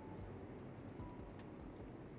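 Faint, scattered soft ticks of a lipstick bullet being dabbed and glided across the lips, with the tube handled, over quiet room tone.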